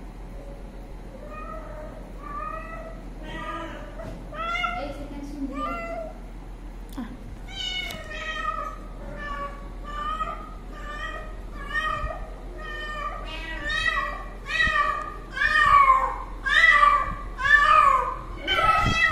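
A cat meowing over and over, short calls coming one after another and growing louder and more frequent toward the end.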